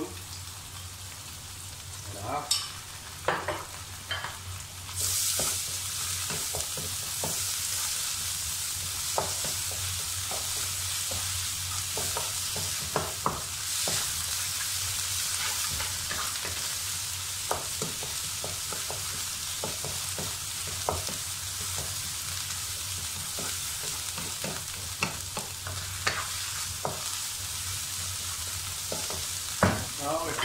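Sliced onions and sambal chilli paste frying in hot oil in a wok: a steady sizzle that grows louder about five seconds in as the paste is stirred through. A spatula scrapes and knocks against the pan now and then.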